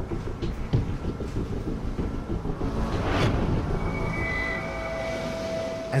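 Dramatic documentary music over a low, rumbling storm sound bed of wind and heavy sea. A whooshing swell rises and falls about three seconds in, and a steady high tone comes in near the end.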